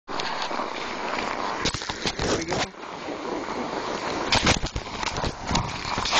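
Handheld camera being handled outdoors: a steady rushing noise over the microphone with several knocks and bumps.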